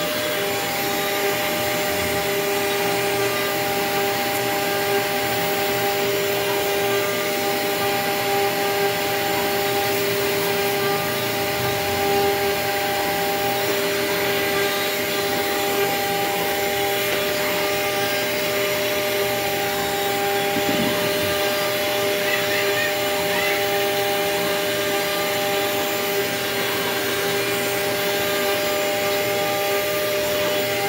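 CNC router spindle running steadily with a 2 mm ball-nose bit taking a slow finishing pass in a wooden board, together with a vacuum hose sucking up the chips. Steady hum with a few held tones.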